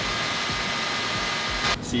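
A steady rushing hiss of blowing air, even and unchanging, that cuts off suddenly near the end.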